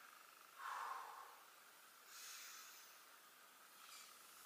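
Near silence with faint breathing: a soft breath about half a second in, then a longer, hissier breath about two seconds in.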